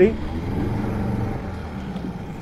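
Small outboard motor idling steadily, a low even hum.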